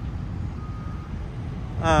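Steady low outdoor rumble of vehicles, with one short, faint, high beep about half a second in.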